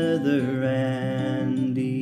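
A hymn sung with acoustic guitar accompaniment: the voice holds one long note that breaks off just before the end.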